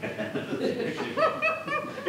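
Theatre audience laughing in a hall: a scattered mix of chuckles from many people, with a few higher individual laughs standing out in the second half.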